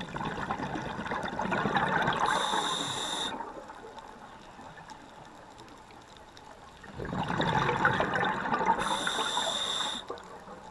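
Scuba diver breathing through a regulator, heard underwater: two long rushes of exhaled bubbles about seven seconds apart, each ending in a brief high hiss from the regulator.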